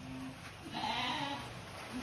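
A sheep bleating once, a single call of about a second that starts about half a second in.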